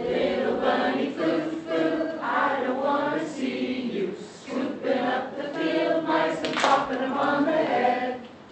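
A congregation singing a song together in phrases with short breaks, led by song leaders, with no instruments showing. A single short sharp sound cuts through about six and a half seconds in.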